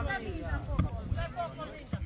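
People talking in an open-air football stand, over a steady low rumble.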